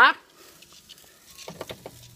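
A quick run of sharp clicks about one and a half seconds in, from the stove control being turned up to high, over a faint low hum.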